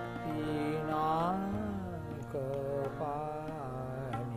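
An elderly man sings a devotional song in an Indian classical style, his voice gliding and bending between notes. A harmonium holds steady chords underneath.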